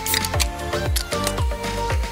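Upbeat background music with a low drum beat about twice a second. Right at the start, a soda can's ring-pull tab is snapped open with a short fizzing hiss.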